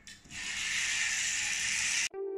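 Small electric motor of a battery-operated kit toy car running steadily, a high buzzing whir that starts about a third of a second in and cuts off suddenly at the end.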